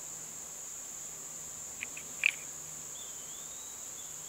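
Steady high-pitched insect chorus in summer woods, with a few short chirps about two seconds in.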